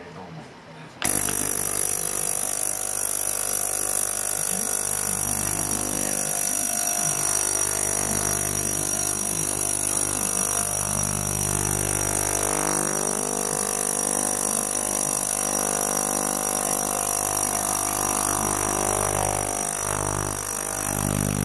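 Small ultrasonic cleaner switching on about a second in and running with a loud, steady buzzing drone and high hiss from the tank.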